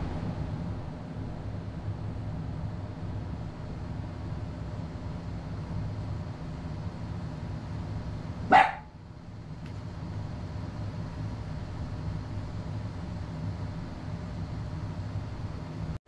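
A steady low hum runs throughout, and about halfway through a dog gives a single short, high yip.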